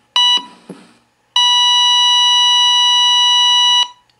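Heart monitor beeping: one short beep, then a long steady flatline tone of about two and a half seconds that stops sharply near the end. The flatline is the monitor's signal that no heartbeat is being picked up.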